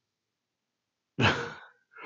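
A man's short, breathy laugh: one puff of breath about a second in that fades quickly.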